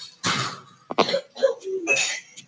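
A person coughing: a harsh burst about a quarter second in and a second, sharper one near one second, followed by short bits of voice.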